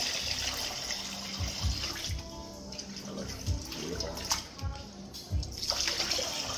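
Kava pouring in a thick stream from a plastic bucket into a large wooden kava bowl, splashing into the kava already in it.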